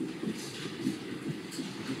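Faint room murmur with indistinct, distant voices in a lull between speakers.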